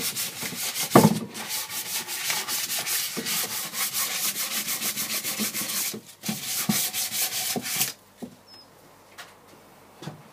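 Hand sanding with 240-grit sandpaper over burnt and painted carved wood: quick back-and-forth scraping strokes, about five a second, with one knock about a second in. The strokes break off briefly about six seconds in and stop about eight seconds in.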